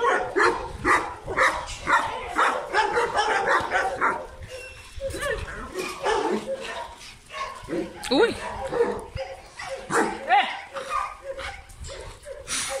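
Several dogs barking. The barks come fast and overlapping for the first few seconds, then grow sparser, with a couple of short whines that sweep in pitch.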